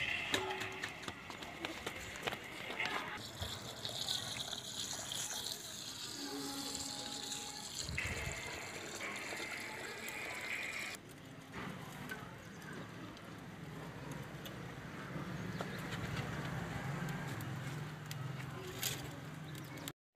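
Water running from a hose pipe into a plastic tub while rice is washed by hand, with faint voices in the background.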